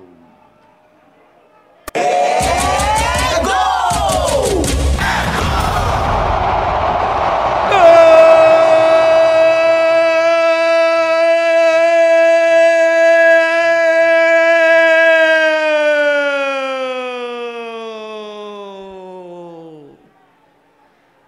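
Crowd noise and excited shouting come in suddenly about two seconds in as a penalty is scored. From about eight seconds a football commentator's single long 'gooool' yell is held at a steady pitch, then sags in pitch and fades away near the end.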